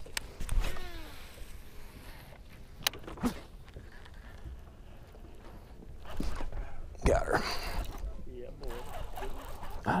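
A baitcasting reel cast: a click, then the spool whirring and slowing as line pays out, then a quiet retrieve with a few clicks. Near the end come short vocal exclamations as a bass pulls on the spinnerbait.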